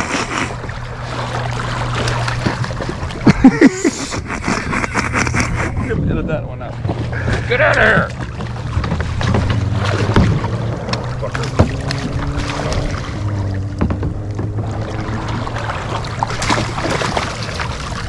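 Water splashing and sloshing around a kayak as brown pelicans flap and thrash beside it, broken by bursts of a man's laughter and exclamations.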